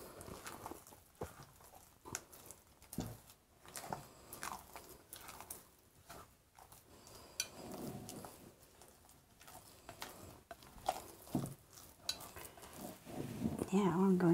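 Thick, moist corn-meal batter being stirred and scraped in a bowl with a spatula: irregular soft squishing strokes and small scrapes of the utensil against the bowl.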